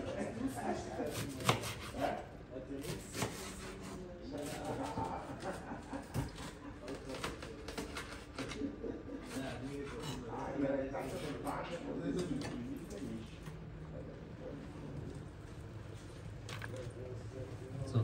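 Knife slicing leeks on a plastic cutting board: separate sharp chopping strikes at irregular intervals, most of them in the first few seconds, under low background talk.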